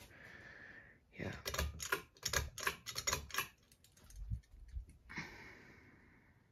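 A quick run of irregular clicks and rattles lasting about two seconds, followed by a few soft low thumps.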